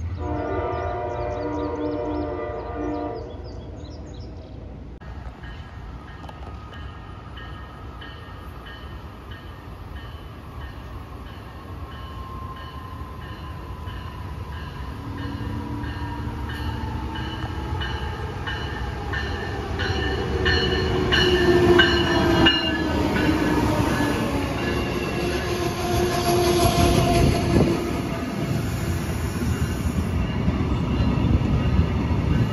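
Passenger train's horn sounding one chord for about three seconds. Then a bell rings steadily while the train approaches, its rumble and wheel noise building until the cars run past.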